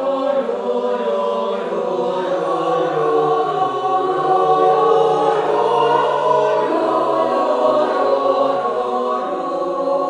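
Mixed choir of women's and men's voices singing a cappella in several parts, holding sustained chords that swell louder toward the middle.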